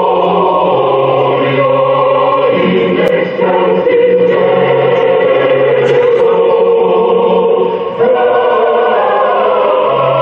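Choir singing slow, long-held chords, the harmony shifting twice, about two and a half seconds in and near eight seconds.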